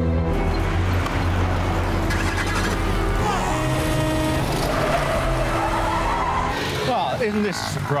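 Film soundtrack: background score music over the low rumble of an old open-top four-wheel drive's engine as it drives along a street. The rumble fades about six seconds in, and a man's voice starts near the end.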